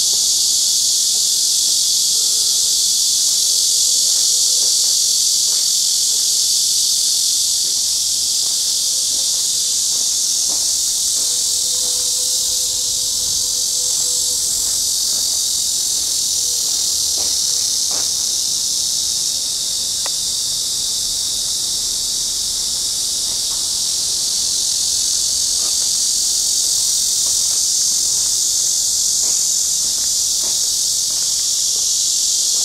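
Cicadas buzzing in a dense, steady chorus: a loud, high hiss that does not let up, with a few faint clicks near the middle.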